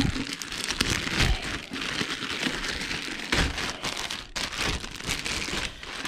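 Clear plastic packaging bag crinkling and rustling continuously as hands work an amplifier out of it, with a few soft knocks of handling.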